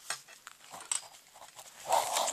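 Short, scattered scratches of writing on lined paper, as an answer is written out and circled.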